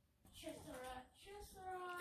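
A high voice singing a few drawn-out notes in a sing-song, gliding up and down, starting about a quarter second in.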